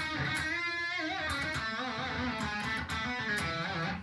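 Electric guitar playing a line of sustained picked notes, their pitch wavering with vibrato, at a steady level.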